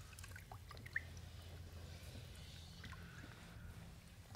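Faint sloshing of vinegar solution as a rag is wiped across a submerged steel plate in a plastic tub, with a low steady hum underneath and a small tick about a second in.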